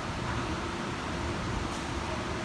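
Steady background hum and low rumble of a large room, like air conditioning or fans, with no speech.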